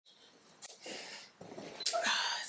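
Rustling and soft bumping of a person dropping onto a leather couch and settling against the cushions, with a small click early on and a sharper short knock just before the end.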